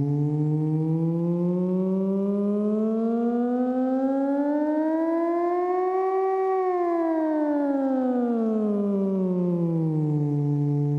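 AE Modular GRAINS module running the Scheveningen West Coast-style oscillator firmware: a steady synthesizer tone with many overtones, its pitch swept slowly up as the P3 knob is turned, peaking a little past halfway, then swept back down to about where it started.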